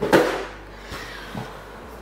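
A cardboard box set down on a table with a brief scuffing knock, followed by a couple of faint light taps.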